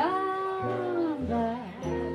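A female jazz vocalist sings over upright bass and jazz guitar. She slides up into a long held note that falls away after about a second, then sings a short rising and falling phrase, while the bass plucks steady low notes underneath.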